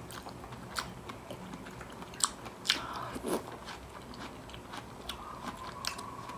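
Close-up eating sounds of creamy fruit salad: soft wet chewing and mouth sounds, broken by a few sharp clicks, the loudest a little over two seconds in.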